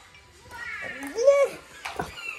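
A young child's short wordless vocal sound about a second in, pitch rising and falling, followed near the end by a single sharp knock.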